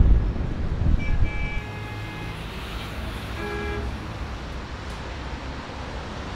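City street traffic: a low rumble of passing vehicles, loudest in the first second or so, with two car-horn toots, one lasting about a second from about a second in and a shorter one about three and a half seconds in.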